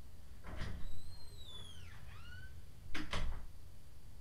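A door with a squeaky hinge: a short noise as it starts to move, a squeal falling in pitch for about a second and a half as it swings, then a second noise burst about three seconds in as it is pushed shut.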